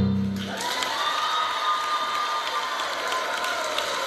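A low piano chord rings out to end the song, then the audience applauds and cheers.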